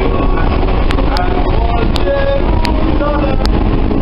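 Subway train running with a loud, steady low rumble and a few sharp clicks, under voices singing in the car.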